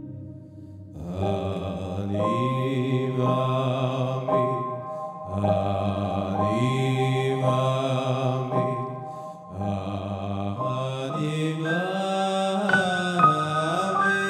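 A man sings a Hasidic niggun into a microphone, accompanied by a Roland electronic keyboard. A held keyboard chord sounds alone at first, and the voice comes in about a second in. He sings in gliding phrases with short breaks and climbs to higher notes near the end.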